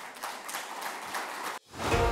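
Audience applauding, cut off abruptly about one and a half seconds in, with music fading in near the end.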